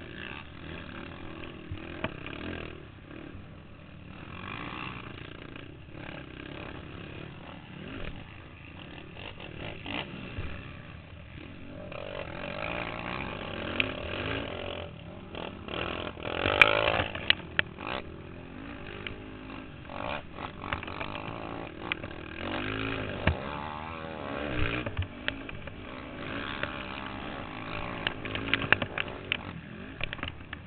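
On-board sound of a racing quad (ATV) engine revving up and down as the rider works through the throttle around a dirt motocross track. The mounted camera also picks up knocks and rattles from the machine over the rough ground, with a loud burst of noise about halfway through.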